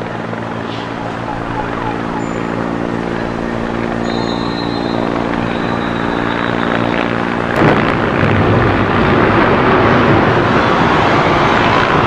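Helicopter hovering overhead, its rotor making a steady, even hum. About seven and a half seconds in, the sound switches abruptly to a louder, rushing noise.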